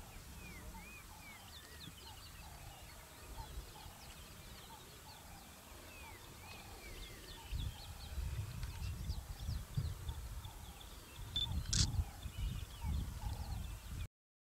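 Birds calling in the bush: many short arching chirps and a string of repeated short calls. A low, uneven rumble comes in about halfway, and there is a single sharp click near the end.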